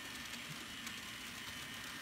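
MTB SW1200 TT scale model locomotives running with freight trains on the track: a faint, steady mechanical running of motors, gears and wheels on rail, with a thin steady whine. The locomotive on the outer track runs a bit noisy, for a reason the owner has not found.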